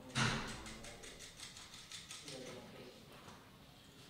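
A sharp knock just after the start, the loudest sound, then a run of small clicks and rattles over the next two seconds, as 3D-printed plastic parts and M3 bolts are handled and set down.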